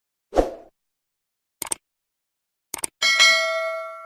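Subscribe-button animation sound effects: a short thump, then two quick double clicks of a mouse about a second apart, then a bright bell ding that rings out and fades.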